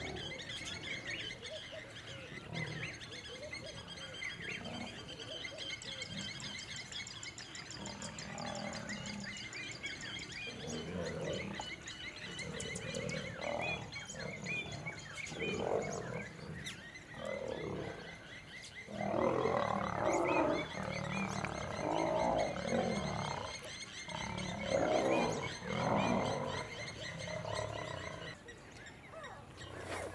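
Male lions fighting, giving repeated rough growls and snarls in bursts that grow louder and closer together through the second half. Birds chirp steadily in the background.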